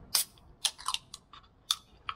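Fingers working the pull tab of an aluminium energy-drink can: one sharp click just after the start, then four or five lighter clicks and taps.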